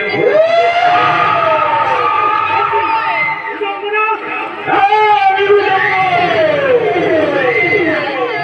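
Bengali jatra actors' loud stage dialogue, delivered in drawn-out, rising and falling declamation through hanging stage microphones.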